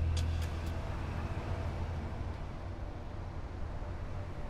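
Road traffic ambience: a steady low rumble of cars on the street.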